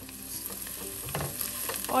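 Chopped red onion with garlic and ginger paste frying in oil in a nonstick pan, the sizzle growing louder, with a spatula stirring and scraping through the onions.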